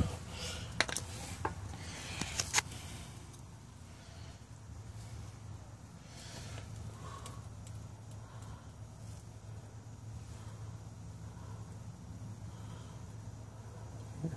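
Hand tools clinking against metal, four or five sharp clicks in the first couple of seconds, then only a faint low hum.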